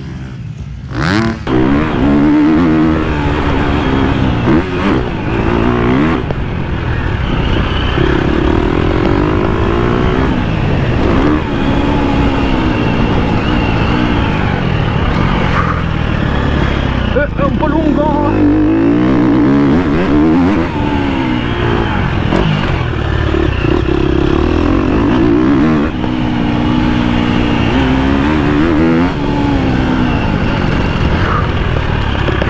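KTM motocross bike engine heard close up from on board, revving hard and falling away again and again as the throttle is opened and shut on the dirt track. It is quieter for the first second, then loud and close for the rest.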